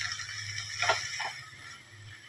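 Onion, peas, carrot and spices sizzling softly in oil in a nonstick kadai while a wooden spatula stirs them, with two light knocks of the spatula against the pan about a second in. A low steady hum runs underneath, and the sizzle fades towards the end.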